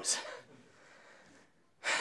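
A presenter's audible in-breath picked up by the microphone, fading into quiet room tone within about half a second.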